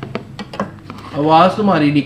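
A metal ladle clicking and scraping against a large metal cooking pot as cooked rice is turned and loosened, a few sharp clicks in the first second. A voice follows about halfway through and is the loudest sound.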